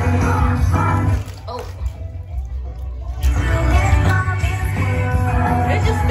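A rock/pop song with singing and heavy bass played through a Soundcore Motion Boom Bluetooth speaker held partly submerged in bathtub water. The music eases off about a second in and comes back fuller about three seconds in.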